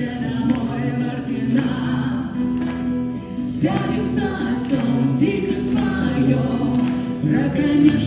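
A song performed live: acoustic guitar accompanying voices singing a held, flowing melody.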